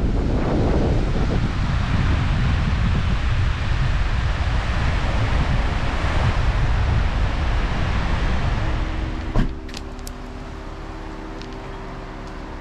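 Wind buffeting the microphone over surf breaking on a sandy, rocky beach. About nine and a half seconds in there is a sharp click, after which the sound drops to a quieter background with a faint steady hum.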